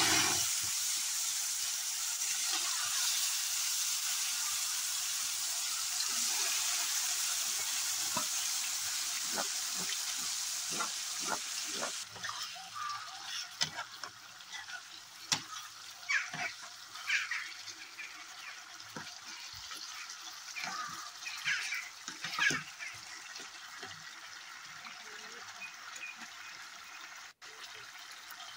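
Marinated chicken pieces sizzling steadily as they fry in hot oil in a metal pot. About twelve seconds in the sizzle stops abruptly, giving way to a quieter simmer with irregular clinks and scrapes of a metal ladle against the pot.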